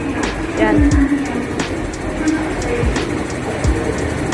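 Footsteps of a person walking at an even pace, about one and a half steps a second, over a steady background hiss.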